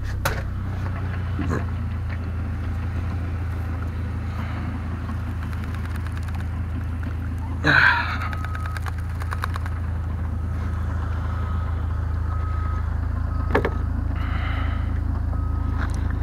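A car engine idling steadily, with a low hum throughout. In the second half a short electronic chime repeats at intervals, like the warning chime of a car with its door open. There is a brief loud noise about halfway through.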